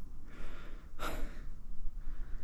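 A person's heavy breathing out after a steep climb: two breathy exhales, the second and stronger about a second in, over a low rumble of wind on the microphone.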